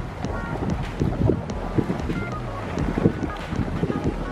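Wind rushing over the microphone and a snowboard sliding on snow, under quiet background music with a light beat of about two ticks a second.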